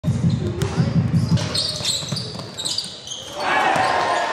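Basketball bouncing on a gym floor amid voices in the hall, with short high squeaks in the middle and the noise growing busier near the end.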